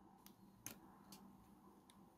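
Near silence broken by a few faint, short clicks, the clearest a little under a second in, as banana-plug power leads are handled at the breadboard's terminal posts.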